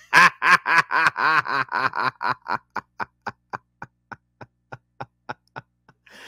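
A man laughing hard: a long run of short, even 'heh' bursts, about four a second, that grow steadily fainter toward the end.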